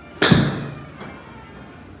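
A TaylorMade SIM MAX 7-iron striking a golf ball off a hitting mat: one sharp crack about a quarter second in that dies away over about half a second. A much fainter knock follows about a second in.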